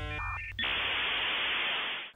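The last notes of a synthesized intro jingle, then from about half a second in a steady hiss of static noise.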